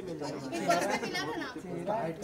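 Several voices talking over one another, chatter that the recogniser could not write down as words.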